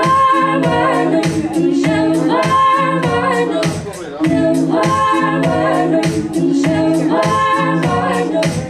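A woman singing in a live electronic song, her voice over sustained, layered vocal harmonies and a steady rhythmic pulse, with a short break in the phrase about halfway through.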